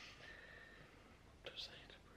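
Near silence: room tone, with a brief faint vocal sound about a second and a half in.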